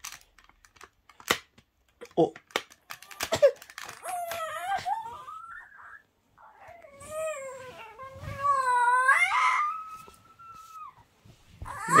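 A few sharp clicks and knocks of hard plastic toy parts being pressed together, then a young child's long, wavering whining cry of frustration from about four seconds in, rising and falling in pitch.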